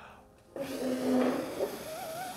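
A person blowing out the candles on a birthday cake: a long, breathy blow that starts about half a second in, with a voice cooing over it.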